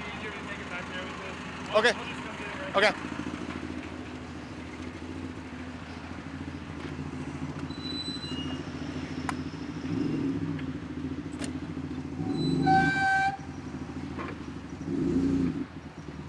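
Forklift engines running steadily, picking up in revs about ten seconds in and twice more near the end. A short horn toot sounds about three-quarters of the way through.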